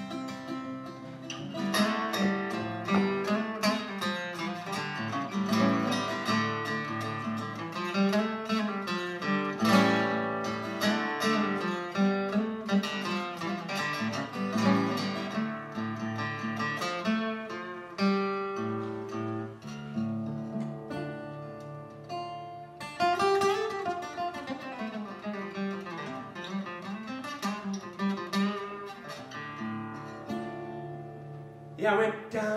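Solo steel-string acoustic guitar playing an instrumental break: a picked melody over bass notes, with a short pause about three-quarters of the way through followed by a strong strum.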